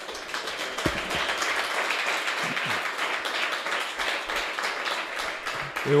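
Audience applauding, building up about half a second in and dying away near the end.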